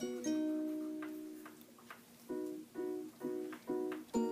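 Light background music on plucked strings: a chord rings and fades away, then short chords repeat in a steady rhythm, a bit over two a second.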